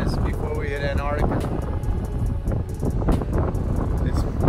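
Wind buffeting the microphone, a heavy, gusting low rush. A man's voice is heard briefly in the first second.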